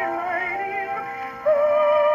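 Victor VV-50 portable wind-up phonograph playing a 1914 acoustic-era 78 rpm record of a woman singing with vibrato. About one and a half seconds in she moves onto a louder held note.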